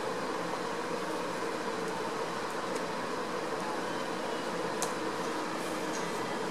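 A few faint key clicks as a command is typed on a laptop keyboard, over a steady background hum.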